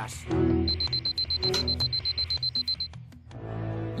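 Alarm clock beeping: a high-pitched tone pulsing fast and evenly, about eight beeps a second, that starts just under a second in and stops about three seconds in, over background music.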